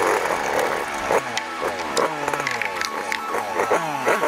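Two-stroke dirt bike engine revving up and falling back several times, its pitch sweeping up and down, with scattered sharp clicks and knocks.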